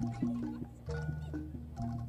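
Quiet jaranan gamelan accompaniment: struck bronze notes, about six in two seconds, each ringing on as a steady tone over a low sustained hum.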